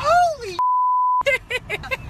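A censor bleep: a single steady high beep about half a second long, cutting in and out sharply. It masks a swear word in an excited exclamation.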